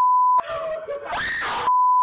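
Two edited-in censor bleeps: a pure 1 kHz tone that switches on and off abruptly, each about half a second long and about a second and a half apart. A short voice sound that rises and falls in pitch comes between them.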